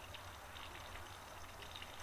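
Faint, steady background noise with a low hum underneath and no distinct event.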